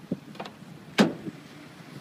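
A single sharp knock about halfway through, preceded by a couple of fainter taps.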